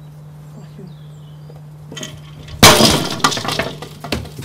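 A sudden loud crash of something brittle breaking, about two and a half seconds in, followed by about a second of shards clinking and settling.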